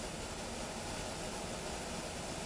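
Steady room tone: a faint, even hiss with no distinct events.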